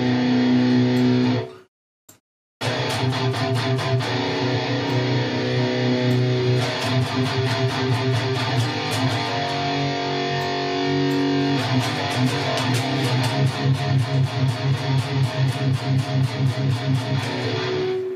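Electric guitar played through the Neural DSP Fortin NTS amp simulator on a high-gain channel, pushed by its Hexdrive overdrive set as a TS9-style boost: level and tone at maximum, drive at zero. It plays a brief metal chord that cuts to silence, then continuous distorted riffing, with fast repeated picked notes toward the end.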